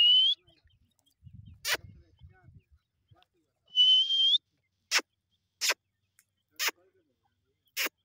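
Grey francolins with chicks calling: two short whistled notes, each rising in pitch, about four seconds apart, with several sharp clicking sounds in between.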